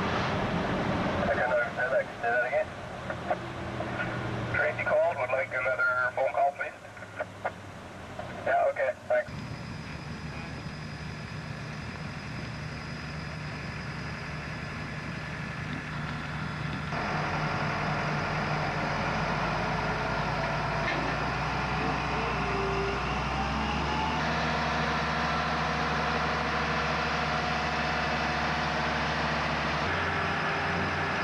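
A vehicle engine running steadily, with voices over it in the first several seconds. About halfway in, the engine hum grows louder and its pitch climbs for a few seconds before holding steady.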